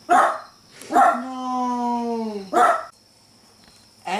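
A dog barking three times: once at the start, once about a second in, and once more before the end. Between the second and third barks comes a long, steady, drawn-out cry.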